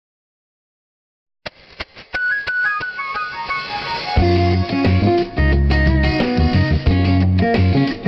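Background music: silent for about the first second and a half, then a run of short plucked notes stepping down in pitch, with a bass line and fuller accompaniment coming in about four seconds in.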